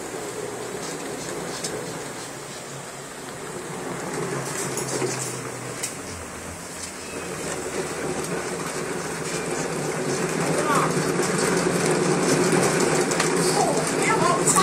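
Cat exercise wheel spinning as several cats run in it: a steady rolling rumble that grows louder over the second half. Faint voices sound alongside it near the end.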